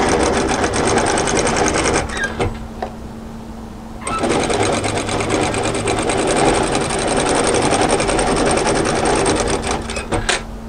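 Industrial lockstitch sewing machine with a binder attachment, sewing binding onto a garment edge in a fast, even stitching rhythm. It stops for about two seconds near two seconds in, then runs again until just before the end. A steady motor hum carries on through the pause.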